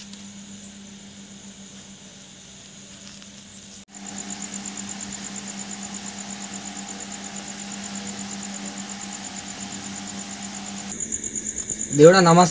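Crickets chirping in a fast, even pulse, over a steady low hum. Both get louder at a cut about four seconds in.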